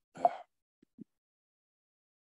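A short voiced sound from a man on a video call just after the start, then two faint soft pops, and the line goes dead silent.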